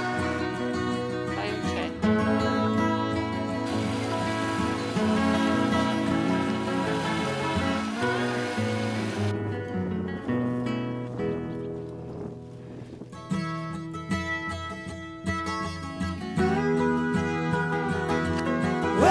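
Background music: the instrumental opening of a folk-rock song, led by acoustic guitar, with no singing yet.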